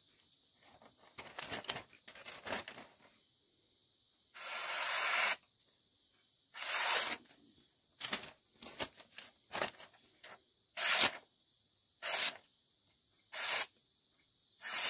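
A fully serrated Spyderco Byrd Harrier 2 blade slicing through sheets of printed paper, about a dozen separate rasping cuts with short pauses between. The first few are faint; the later ones are louder, the longest lasting about a second. The blade goes through easily, which is the sign of a very sharp serrated edge.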